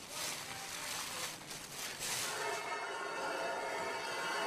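Gritty hiss of sand, in a few surges over the first two seconds, as abrasive sand is poured into the holes of a metal smoothing plate resting on a marble column drum. From about halfway, background music with held tones takes over.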